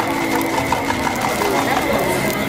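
Indistinct background voices with a thin steady high tone, and light clicks and scrapes of plastic spatulas against a flat griddle as an omelette is folded.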